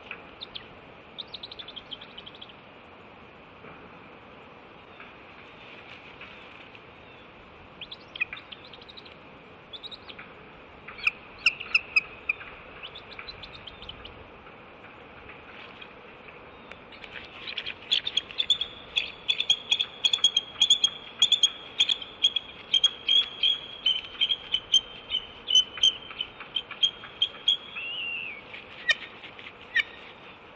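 Bald eagles calling: a few short, high calls in the first half, then from about halfway a long run of rapid chittering notes, about three a second for some ten seconds, ending in a falling note. This is the pair's calling as the male mounts the female to mate.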